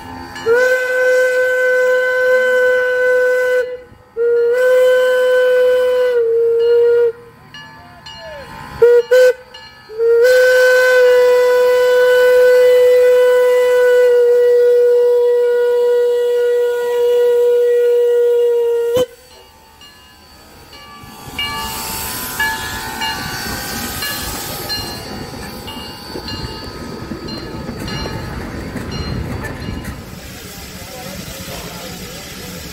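Steam locomotive whistle blowing two long blasts, a short one and a final long blast, one steady tone with overtones. After it stops, the train is heard rolling past with the steady noise of its wheels on the rails.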